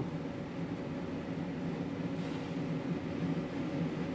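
Truck electric APU's 12-volt all-in-one under-bunk air conditioner running, with its compressor on and the blower at its highest fan setting. It makes a steady low hum with a rush of air.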